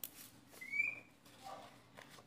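A single short, high chirp about half a second in, over faint rustling of potting mix as a hand presses soil around a succulent offset.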